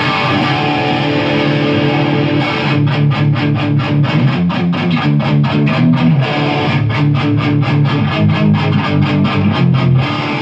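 Electric guitar played through a Marshall amplifier and cabinet. A chord rings for about two and a half seconds, then a fast riff of short, rapidly repeated picked chords runs through the rest.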